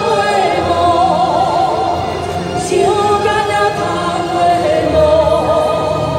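A woman singing into a handheld microphone over an amplified backing track, holding long notes with a wavering vibrato.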